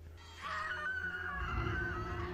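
A woman's long, held scream from a TV horror episode, starting about half a second in, over a low rumbling drone.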